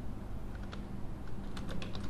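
Computer keyboard typing: a few scattered keystrokes, then a quicker run of clicks near the end.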